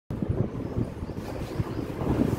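Uneven low rumble of air buffeting a phone's microphone, with soft handling bumps as the phone is set up.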